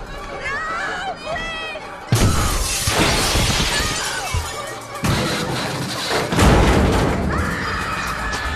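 Horror-film sound effects over music: a wavering, shrieking cry, then a sudden loud crash with breaking glass about two seconds in. Further heavy crashes follow around five and six seconds.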